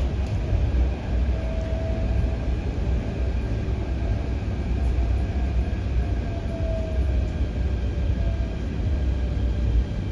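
Inside the car of an MTR K-Train (Hyundai Rotem/Mitsubishi electric multiple unit) while it is running: a steady low rumble of wheels on track with a faint wavering whine. Near the end the train is pulling into the station.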